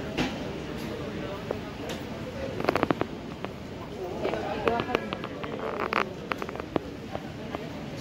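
Terminal concourse ambience: indistinct voices of passers-by, with quick runs of sharp clicks and taps about three seconds in and again around five to six seconds.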